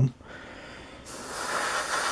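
Airbrush spraying, its hiss of air and paint starting suddenly about a second in and growing louder.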